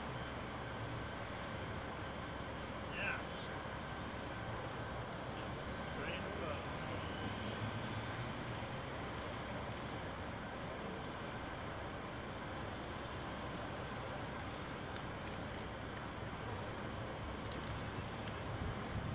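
Steady outdoor city background noise with faint, distant voices. A brief high sound stands out about three seconds in.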